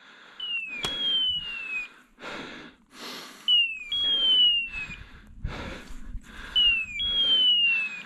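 A hunting dog's beeper collar sounding its point-mode signal: a pair of falling electronic chirps, a short one then a longer one, repeated about every three seconds, the sign that the dog is holding point. Dry brush rustles underfoot in between.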